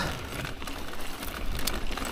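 Mountain bike rolling over dry dirt and grass singletrack: steady tyre and trail noise with a low wind rumble on the microphone, and a couple of faint clicks, about half a second in and near the end.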